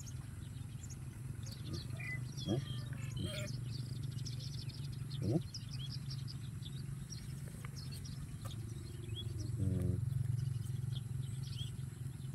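Small birds chirping over and over in the background, with a steady low hum underneath and a couple of short rising squeaks.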